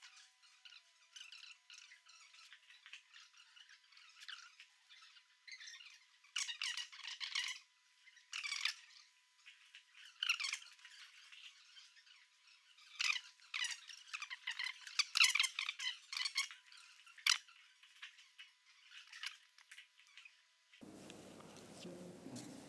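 Faint, thin rustling and handling noises in irregular bursts, from a nylon reserve-parachute canopy and its lines being handled and laid out. The sound has no low end and grows busier in the middle stretch.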